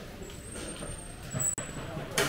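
Background sound of a covered shopping arcade, a steady mix of distant noise, with a thin high-pitched squeal held for about a second and a sharp click just past the middle.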